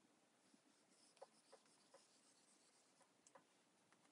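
Faint light taps of a stylus tip on a tablet's glass screen while erasing handwriting, a few soft clicks spread through otherwise near silence.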